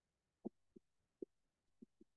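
Stylus tapping on a tablet screen while drawing a dashed line: four faint, dull taps at uneven spacing.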